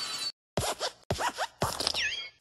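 Four short, scratchy, zipper-like bursts with squeaky rising and falling glides in them, separated by brief silences: cartoon sound effects for the animated desk lamp's movement.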